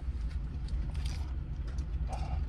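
Low, steady rumble of a car idling, heard inside the cabin, with faint crinkles and clicks from a paper food wrapper being handled while eating.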